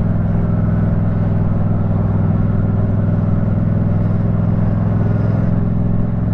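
Yamaha MT-07's parallel-twin engine running at a steady, unchanging speed under way on the motorcycle, with a haze of wind and road noise.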